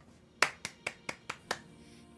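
Six quick, light hand claps, about five a second, the first one the loudest.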